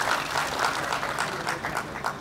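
Audience applauding, many hands clapping together in a hall.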